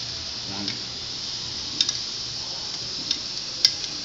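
Butter, garlic and white wine sizzling in a metal frying pan as raw shrimp are laid in, a steady hiss with a few sharp clicks in the second half.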